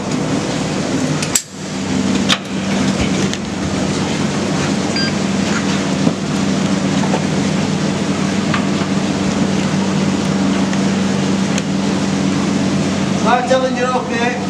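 Loud, steady rushing noise over a constant low mechanical hum. A few sharp metal clicks come in the first few seconds as a harness lanyard clip is worked on an anchor point, and a man's voice comes in briefly near the end.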